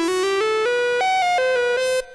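EML 101 monophonic analog synthesizer playing a quick run of about ten joined notes with a bright tone: the pitch climbs step by step, leaps up about a second in, then drops back.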